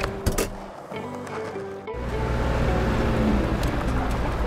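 Background music over a low, steady engine rumble from a cartoon truck driving off. The rumble drops away for about a second near the start and then returns.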